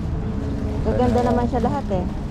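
A person's voice speaking for about a second in the middle, over a steady low rumble.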